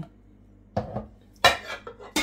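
A milk-filled glass mason-jar mug being set down on a wooden cutting board among other glass jars: two short knocks, a little under a second apart.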